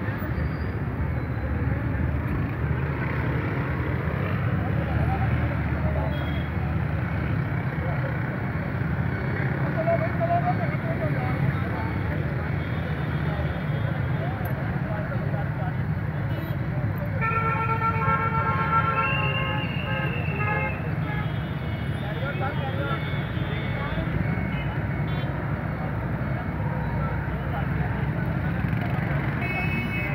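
Street traffic noise with a steady low rumble and voices in the background; a little past the middle, a vehicle horn honks several short times.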